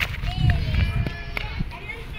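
Outdoor street ambience: a low rumble on the microphone, loudest in the first second and a half, under faint distant voices of people and children.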